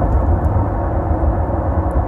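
Steady low rumble of car cabin noise heard from inside the car, with no breaks or changes.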